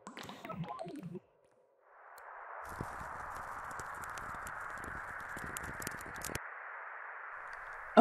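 A steady hiss fading in about two seconds in, with scattered crackles through its middle stretch: a sound effect under an animated studio logo.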